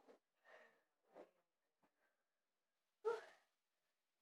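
Mostly near silence, with a few faint soft bumps and shuffles of bare feet and a body moving on a wooden floor during a gymnastic move, then one short vocal sound from the girl about three seconds in.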